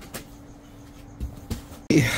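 A few light knocks and handling noises from 3D-printer parts and foam packing being lifted out of a cardboard box, over a faint steady hum.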